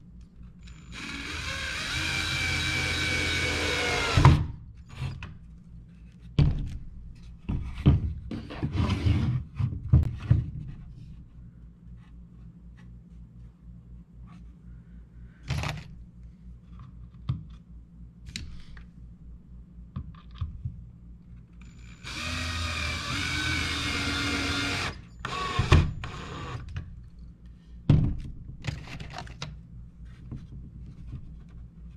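Cordless drill running into a pine board in two runs of about three seconds each, one starting about a second in and one a little after the twenty-second mark, its whine shifting slightly in pitch as it works. Between the runs, sharp knocks and clicks of wood and the drill being handled and set down on the table.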